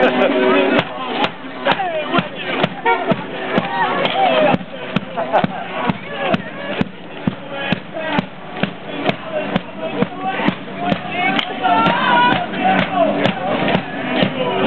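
A band's steady drumbeat, about two hits a second, carrying on as the group parades down the street, with crowd voices shouting and singing over it.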